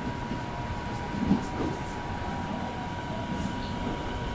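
JR East 209 series electric multiple unit running into the station as it arrives at the platform, a steady rumble of wheels on rail and traction noise. A steady high-pitched tone sounds behind it.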